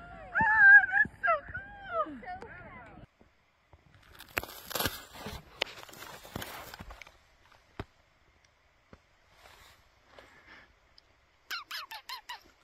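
A person laughing for the first few seconds. Then snowshoes crunch and shuffle in deep snow for about three seconds, followed by near quiet with a single click. A voice comes in again near the end.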